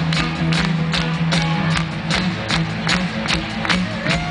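Live rock and roll band playing an instrumental stretch between sung lines: electric guitar, bass and drums, with a steady drum beat of about two and a half hits a second.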